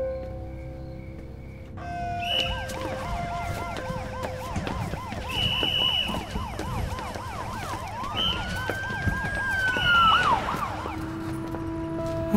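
Police siren wailing in a fast up-and-down yelp, about three cycles a second, starting about two seconds in, with a second siren tone sliding up and back down over it near the end. Soft background music lies underneath.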